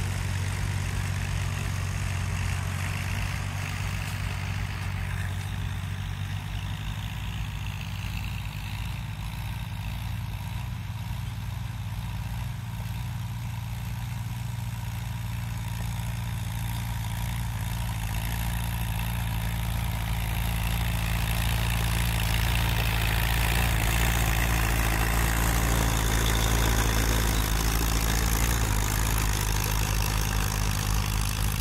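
Vintage Allis-Chalmers tractor engines (a D14 and a CA) running steadily as they work a plowed field, the D14 pulling field drags and the CA a rear blade. The sound grows somewhat louder in the second half as the CA comes close.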